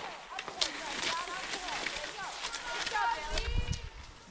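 Distant voices of several people calling out, with scattered sharp clicks and a low rumble near the end.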